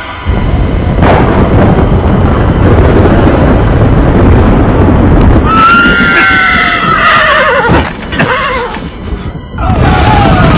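Film sound effects of horses: a loud low rumble that starts suddenly, then about five and a half seconds in a horse whinnying over it, its pitch falling, with another whinny near the end.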